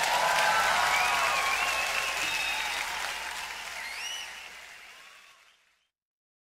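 Live concert audience applauding, with a few pitched cries on top, the sound fading away to silence about five seconds in.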